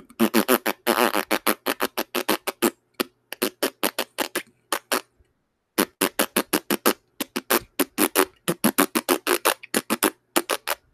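Fart sound effect played back: a rapid string of short sputtering pops, about five a second, in two runs with a short break about five seconds in.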